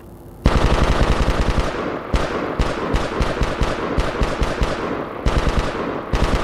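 Machine-gun fire sound effect played through the stage loudspeakers for a battle scene. A fast burst starts about half a second in, then single shots come a few per second, and another fast burst comes near the end.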